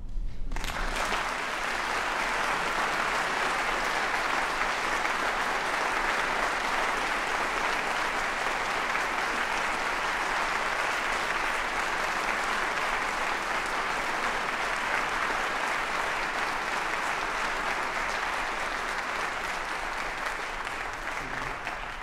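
Audience applauding steadily, starting about half a second in and tapering off slightly near the end.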